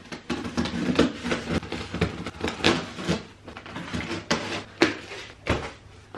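Scissors cutting the packing tape on a cardboard shipping box, with a run of irregular scrapes and knocks from the blades and cardboard.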